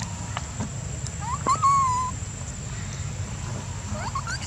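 A long-tailed macaque gives one pitched call about a second in, rising and then held level for most of a second, with a few short chirps before it.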